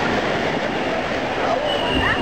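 Steady rush of splashing pool water, with faint voices of swimmers mixed in.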